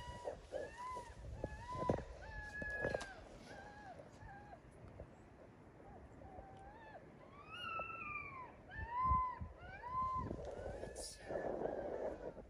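Mini Aussiedoodle puppy whining, a string of short high whimpers that rise and fall, about two a second. A longer, higher whine comes about eight seconds in. A few dull thumps sound as it is handled.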